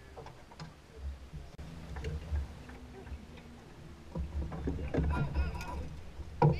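Uneven low rumble of a small aluminium fishing boat drifting on open water, wind and water against the hull, with scattered small knocks. Voices come in near the end.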